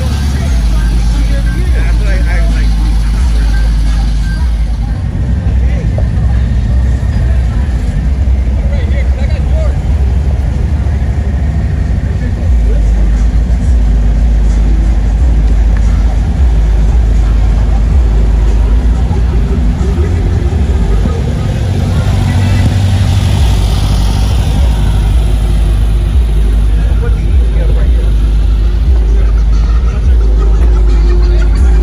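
Air-cooled flat-four engines of vintage Volkswagens, a split-window bus and then a Type 3 Squareback, running as they roll slowly past, over a steady low rumble. Voices can be heard in the background.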